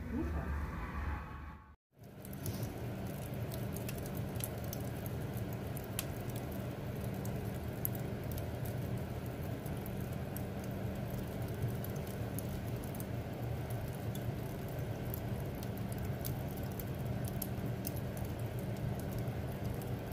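Wood fire burning in a fireplace: a steady low rush with many irregular sharp crackles and pops. It begins after a brief cut to silence about two seconds in.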